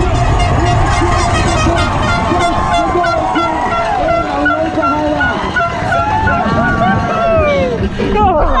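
Spectators at a downhill mountain-bike finish shouting and cheering, with a horn tooting in rapid short blasts in the middle. At first there is also wind and rolling noise from the bike coming in to the finish.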